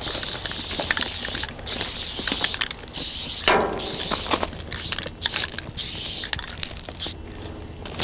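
Aerosol spray-paint can hissing in several stretches with short breaks as a graffiti tag is sprayed onto a freight car's steel side.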